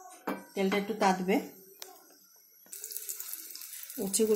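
Hot oil in a frying pan sizzling as slices of bitter gourd are dropped in. The steady hiss starts about two-thirds of the way through.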